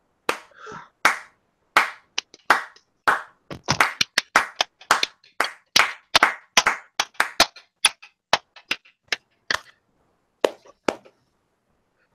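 Hand clapping: a run of separate, irregular claps that come thickest in the middle, then thin out and stop about eleven seconds in.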